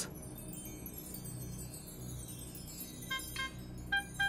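Quiet background music of chime-like bell notes, with a few short ringing chime strikes near the end.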